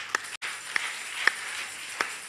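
Congregation applauding: a steady patter of clapping, with single sharper claps standing out about twice a second.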